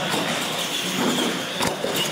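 Electric R/C monster trucks racing side by side on a concrete floor: a high motor and gear whine with tyre noise, and a sharp knock near the end.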